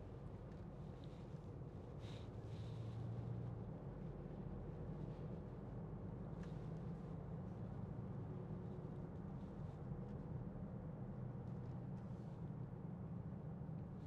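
Steady low hum inside the cabin of a Range Rover Evoque 2.0 TD4 four-cylinder diesel driven slowly, engine and tyre noise together, rising slightly a couple of seconds in.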